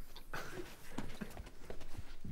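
Footsteps on a studio stage floor: a few soft, irregular steps as someone walks in.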